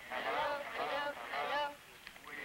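High-pitched voices singing short, gliding phrases, three in a row with brief breaks between them.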